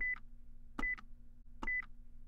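Three short high electronic beeps, each with a click, a little under a second apart, over a faint low hum: a quiz countdown timer sound effect ticking down the answer time.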